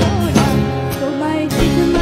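Live band playing a Bengali song: a woman singing into a microphone over acoustic guitar, drum kit and keyboards.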